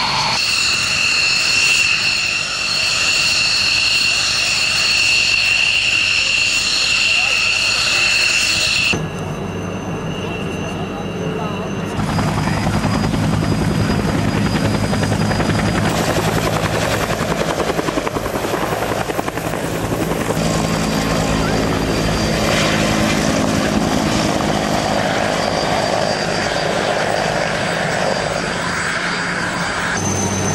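An F-16's jet engine running with a steady high whine, which cuts off suddenly about nine seconds in. From about twelve seconds on, helicopter turbines and rotor blades run with a low, steady drone, as a UH-1 Huey flies past low.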